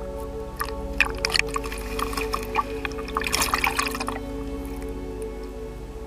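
Water splashing and dripping close by at the surface, a busy run of small splashes and drips from about half a second to four seconds in, over a steady background music track.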